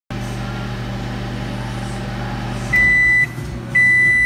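LG microwave oven running with a steady hum, which stops a little under three seconds in as the cycle ends. Its end-of-cycle beeper then sounds two long beeps about a second apart.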